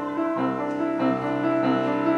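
Piano accompaniment playing sustained chords between sung phrases.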